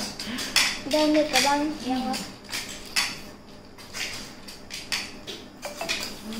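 Snail shells clinking and clicking against a steel bowl and plates as several people pick the snails out and eat them by hand: a run of short, sharp taps. A brief voice is heard in the first two seconds.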